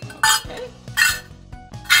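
Stainless-steel measuring cups clinking together three times as they are handled and stacked, over light background music.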